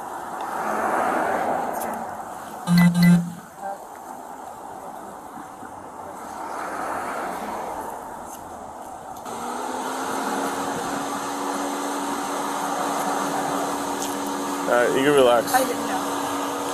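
Roadside traffic: vehicles passing on the road, the sound swelling and fading twice, with a short loud sound about three seconds in. From about nine seconds a steady music bed comes in under the scene.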